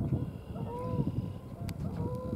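Two faint, drawn-out bird calls about a second apart, each rising and falling in pitch, from large birds calling in the distance.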